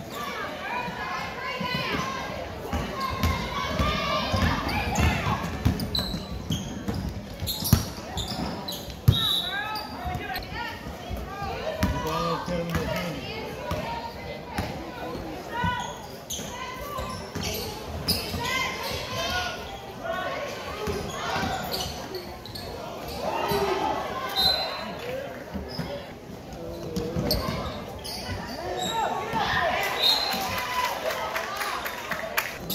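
A basketball being dribbled and bouncing on a hardwood gym floor during play, with scattered sharp knocks, the two loudest about 8 and 9 seconds in. Voices of players and spectators echo through the gym throughout.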